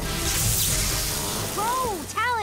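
Cartoon laser beam sound effect: a steady hissing sizzle as the beam burns into a metal clock hand, over background music. Near the end a short rising-then-falling voice sound comes in.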